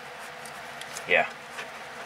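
Steady low buzzing background noise, with a single short spoken "yeah" about a second in.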